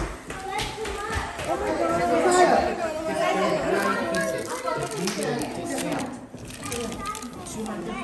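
Overlapping chatter of several children and young people talking at once, no single voice clear.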